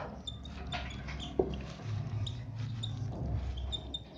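Whiteboard marker squeaking and scratching across the board as words are written, in a run of short faint strokes.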